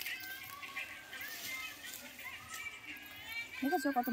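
Quiet background with faint high chirping calls, then a person's voice starting loudly near the end.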